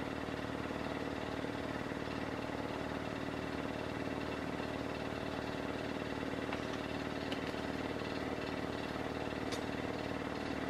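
A motor running steadily, a low even hum of several held tones, with a couple of faint ticks.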